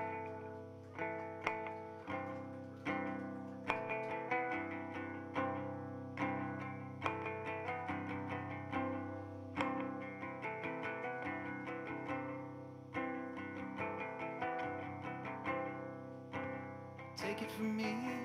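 Solo small-bodied guitar played through effects pedals: plucked notes and chords struck about once a second, ringing on over a sustained low drone, as an instrumental passage with no singing.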